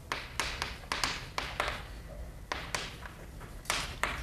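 Chalk writing on a blackboard: a run of quick taps and short scrapes in uneven clusters, pausing briefly about halfway through.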